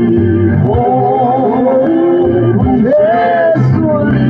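A man singing a gospel song into a microphone over instrumental backing music. His voice slides between long held notes.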